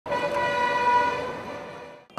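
A vehicle horn giving one long held, multi-tone blast over street traffic noise, fading out over the last second.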